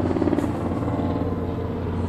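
A 2008 BMW 528i's 3.0-litre inline-six engine idling steadily, heard close up from over the open engine bay.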